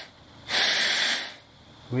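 A burst of compressed shop air hissing, starting about half a second in and lasting under a second, as it is fed into the high-pressure oil pump supply line of a 6.0 Power Stroke diesel to test for leaks. The leak it shows is at the quick-connect fitting, and it is why oil pressure only reached about 300 psi during cranking.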